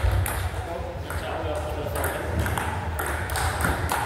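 Plastic table tennis ball in a rally, clicking off the bats and bouncing on the table in a string of short, sharp ticks.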